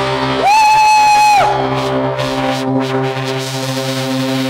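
Live rock band playing a sustained chord, with a loud high note that slides up into pitch and is held for about a second before dropping away.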